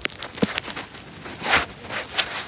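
Footsteps on beach sand with handling noise from a phone held while walking: a few short knocks and a louder rush of noise about three-quarters of the way through.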